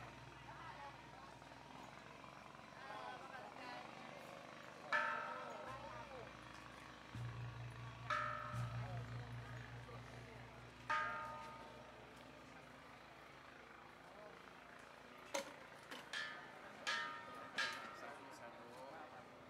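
Metal bells struck one at a time, each ring dying away over about a second. Three strikes are a few seconds apart, then four come in quick succession near the end. Faint voices and a low steady hum lie underneath, and the hum stops about halfway through.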